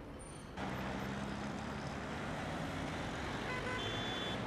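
Steady street traffic noise from passing road vehicles, starting about half a second in.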